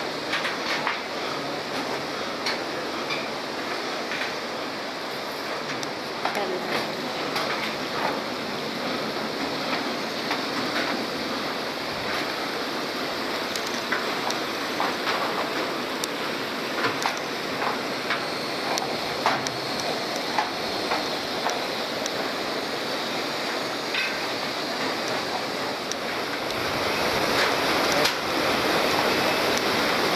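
Steady rush of the Iguazu River running over rocky rapids, growing louder near the end, with scattered clicks and knocks of footsteps on the metal grating walkway.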